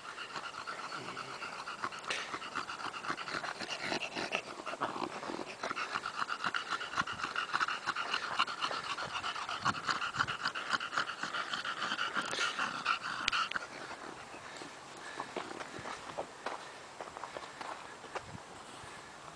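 A French bulldog panting fast and hard to cool itself off, easing off to quieter breathing a little past two-thirds of the way through.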